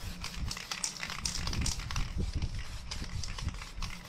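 Aerosol spray-paint can hissing in many quick, irregular short bursts as paint is misted over a paper stencil, with a low rumble of handling underneath.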